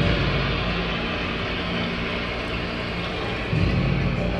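Archival recording of a stadium crowd applauding and cheering after Kennedy's "We choose to go to the moon" line, played over theatre speakers as a steady wash of noise that swells near the end.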